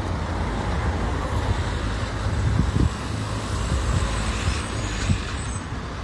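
Street traffic rumble, a steady low noise with a few short low thumps through it.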